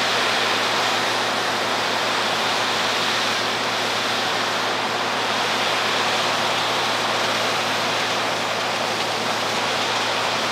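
Wheeled whole-tree chipper running at working speed, a loud, even rushing noise over a low engine hum, with chipped wood blowing out of its discharge chute.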